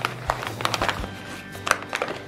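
Rustling and crinkling of food packets and a fabric shopping bag as a hand rummages through groceries, with many short clicks and crackles. Soft background music plays underneath.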